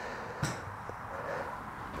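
A quiet lull of low background noise, with one faint soft tap about half a second in.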